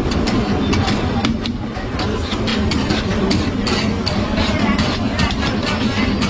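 Metal spatula clinking and scraping, several irregular strikes a second, on a large flat steel pan as meat sizzles. Underneath runs a steady, loud din of a crowded street market with voices.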